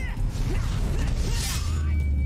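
Action-cartoon soundtrack: a low rumbling score under mechanical sound effects, with a swish about one and a half seconds in.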